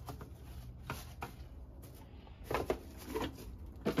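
Hands scraping and scooping wet vegetable pulp out of a clear plastic juicer pulp container, with scattered plastic knocks and clunks; the sharpest knocks come a little past halfway and just before the end.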